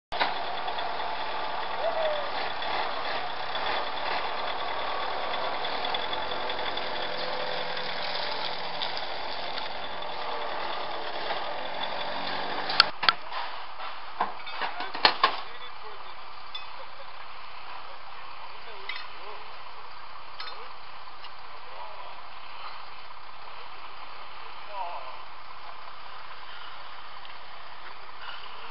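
Indistinct talk from a group of people, over a steady low hum in the first half. About halfway through comes a cluster of sharp metallic knocks as aluminium cases and equipment are handled, after which it goes quieter.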